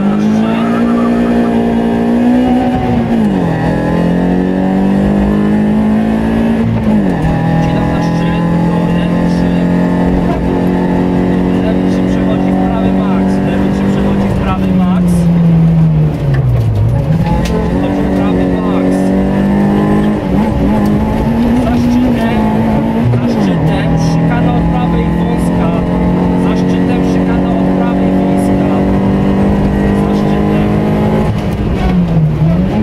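Rally car engine under hard acceleration heard from inside the cabin: it pulls away, the engine note rising and dropping with each gear change, dipping deeply about halfway as the car slows for a bend, then pulling hard again.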